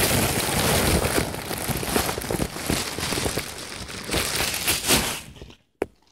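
Plastic shopping bag and the plastic wrapping of a pillow crinkling and rustling right against the microphone as the pillow is pulled out of the bag; the rustling stops about five and a half seconds in.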